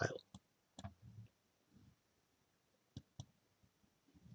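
A few faint computer mouse clicks over near silence: a soft couple about a second in and a sharper pair about three seconds in.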